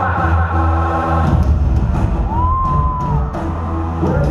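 Amplified live band music filling an arena, heavy in the bass, with crowd noise underneath. The music changes abruptly a little over a second in, and one clear high note is held for about a second around the middle.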